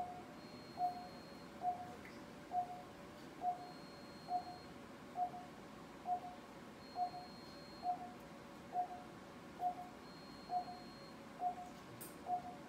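Operating-room patient monitor beeping with each heartbeat: a short mid-pitched pulse-oximeter beep at a steady rate a little faster than once a second, about 70 a minute, with an unchanging pitch. A faint high tone also sounds briefly every couple of seconds.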